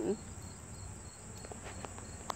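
Crickets chirping: a faint, high, rapidly pulsed chirp repeating evenly, with a steady thin high insect hum beneath it.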